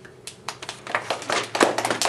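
Several people clapping, the applause starting about half a second in and growing louder.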